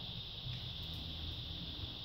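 Steady high hiss with a low hum: room tone.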